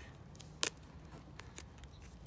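Clear plastic stretch film being pressed down and smoothed around a freshly wrapped crown graft: one sharp snap just over half a second in, then a few faint ticks.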